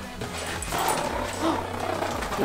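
Two small dogs growling at each other in play as they tug at a toy.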